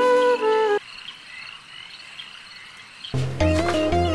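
Background music cuts off suddenly under a second in, leaving about two seconds of night ambience of frogs and insects calling; a new music cue comes in near the end.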